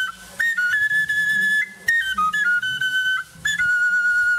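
Background music: a solo high, flute-like melody of held notes that step and slide between pitches, broken by three short gaps. A soft low accompaniment sits under it.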